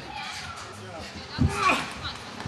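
Background voices of people talking and calling out, with one louder shout about one and a half seconds in.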